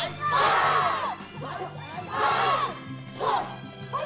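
A team of martial artists shouting kiai together, about three group shouts with the longest near the start, over music with steady bass notes.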